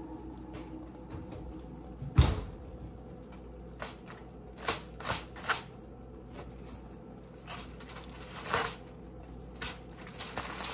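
Kitchen handling noises: one solid thump about two seconds in, then a scatter of light knocks and rustles, as pot holders, an oven mitt and a foil-covered glass baking dish are handled on a countertop.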